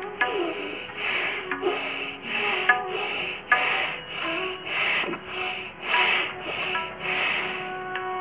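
Bhastrika pranayama (bellows breath): about a dozen forceful, audible breaths in and out through the nose, evenly paced at roughly one every two-thirds of a second. Soft instrumental music runs underneath.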